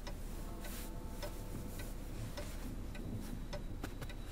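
A mechanical clock ticking steadily.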